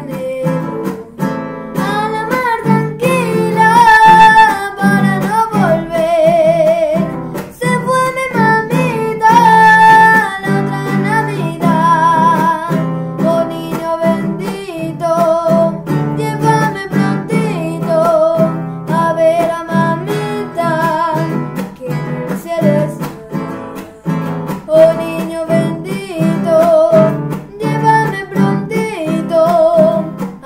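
A boy singing a Christmas song while strumming a classical guitar, the sung melody wavering with vibrato over steady strummed chords.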